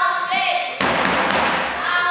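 Spectators in a sports hall calling and chanting, with a louder burst of crowd noise starting about a second in and lasting about a second, among dull thuds.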